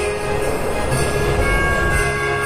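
Background Christmas music with a rushing whoosh sound effect and deep rumble swelling under it from about half a second in, as the animation sweeps into a new scene.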